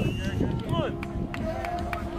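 Distant shouts and calls from people around an outdoor soccer field, with wind rumbling on the microphone. A few short sharp taps in the second half.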